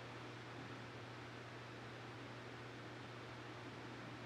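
Faint, steady room tone: an even hiss with a low, constant hum beneath it, and nothing else happening.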